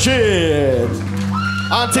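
A man's drawn-out cry through the PA, sliding down in pitch over about a second, with a shorter cry near the end, over a steady low hum from the stage amplifiers.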